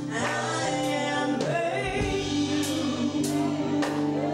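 Live gospel singing by a women's vocal group through microphones, with steady held instrumental chords and several short percussive hits underneath.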